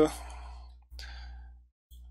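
Low steady electrical hum from the recording chain, with a soft breath about a second in. The sound cuts out abruptly twice, the second time into dead silence shortly before the end: edit cuts in the recording.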